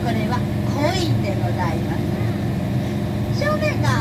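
Amphibious duck-tour bus afloat on the river, its engine running with a steady low drone.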